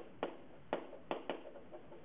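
Pen stylus tapping against the writing surface while handwriting: four faint, sharp clicks at irregular intervals over a low hiss.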